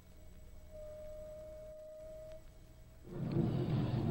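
A faint, steady single-pitch tone over a low hum, a little stronger through the middle. About three seconds in, a rush of background noise swells up.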